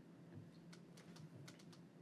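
Faint keyboard typing: a quick run of light clicks in the second half, over near-silent room tone with a low steady hum.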